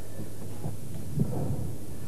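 A brief pause in the talk: steady low hum and rumble of the studio sound, with a faint low stir around the middle.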